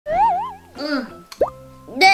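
Cartoon sound effects over light background music: a loud warbling tone whose pitch wobbles up and down, then a quick rising pop-like glide about one and a half seconds in.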